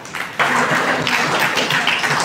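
Audience clapping, starting suddenly about half a second in.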